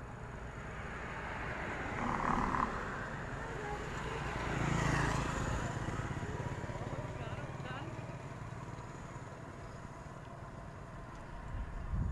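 A small motorbike passes by: its engine and road noise swell to a peak about five seconds in and fade away, over a steady low rumble of traffic.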